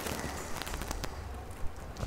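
Faint rustling and light ticks of sheets of paper being leafed through by hand, with one sharper tick near the end, over a low steady hum.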